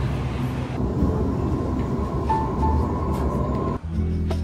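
Double-deck electric Sydney Trains train moving along an underground platform: a steady rumble with a faint whine. It cuts off abruptly near the end, where background music begins.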